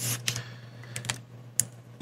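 Felt-tip marker drawn across paper in one short scratchy stroke at the start, followed by a few light clicks and taps about a second in and near the end, over a steady low hum.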